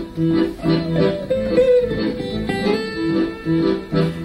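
Live duo recording of acoustic guitar and accordion: the guitar plucks short melodic phrases over sustained accordion notes.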